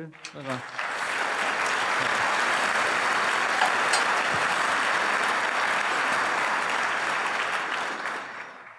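Audience applause, swelling within the first second and then holding steady.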